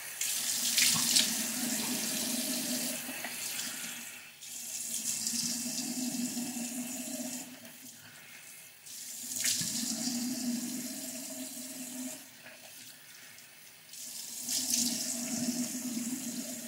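Bathroom tap running into a sink while water is scooped and splashed onto the face to rinse off soap. The running tap gives a steady hum under the water noise, which swells and drops in repeated rounds with short lulls between.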